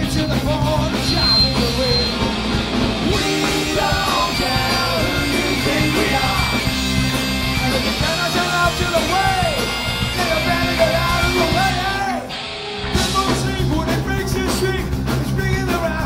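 Loud live Celtic punk: bagpipes, electric guitars, bass and drums with singing. About twelve seconds in the band drops out briefly, then comes back in full.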